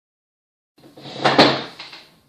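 A person sitting down at a table: a rustling scrape with a sharp knock about halfway through, dying away.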